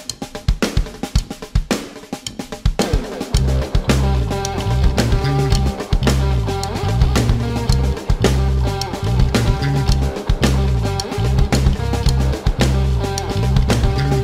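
A nu metal song starting: a drum kit plays alone at first, then bass and guitars come in about three seconds in with a low, rhythmic riff over the drums.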